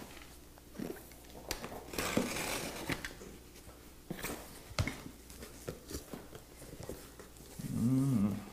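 Utility knife slitting packing tape on a cardboard box, then the cardboard flaps being folded open and a hand brushing the plastic wrap over the foam packing inside: a string of short rustles, scrapes and clicks.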